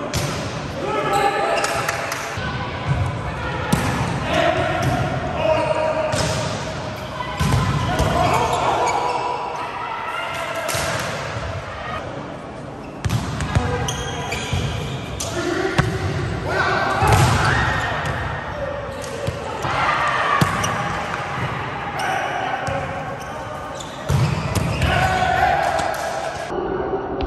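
Volleyball rally in a large gym: the ball is struck again and again in sharp smacks from passes, sets and hits, while players' shouted calls ring out throughout.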